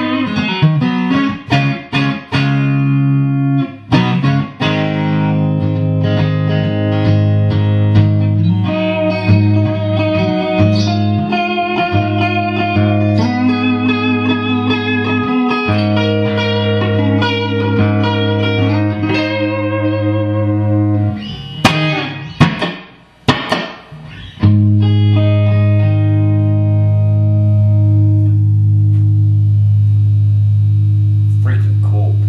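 Fender Stratocaster electric guitar with single-coil pickups, played through an amp: a run of single-note lead lines, a few short choppy strums a little past the two-thirds mark, then a low chord left ringing out.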